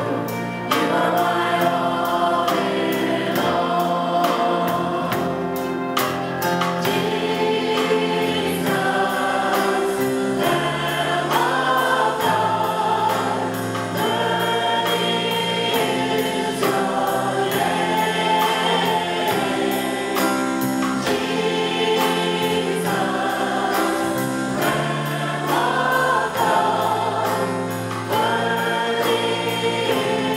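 Live church worship band playing and singing a slow worship song: a woman's lead voice with backing singers over keyboard, electric guitars and drums, with a steady light beat.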